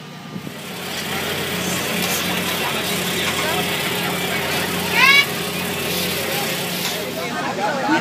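Steady machinery hum and rush inside a food truck's kitchen, with a brief high warbling squeak about five seconds in.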